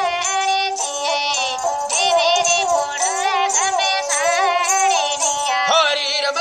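Rajasthani Kalbeliya folk song: a singer's ornamented, wavering melody over a steady held drone note.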